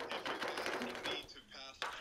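Dry rub seasoning poured off a tilted aluminium foil sheet pan onto a rack of ribs: a fast, dense rattle of fine grains on foil, easing off after about a second and a half. A faint voice is heard near the end.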